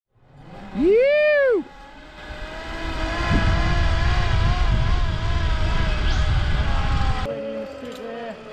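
Zipline trolley pulleys running along the steel cable: a whine whose pitch wavers, over a rumble of wind on the camera, cutting off suddenly near the end. It opens with a short, loud rising-then-falling whine about a second in.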